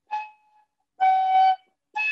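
A first-time player blowing short notes on a small wooden transverse flute (響笛), heard over a video call. A brief, faint note comes just after the start, then a stronger breathy note held about half a second, and another note begins at the very end.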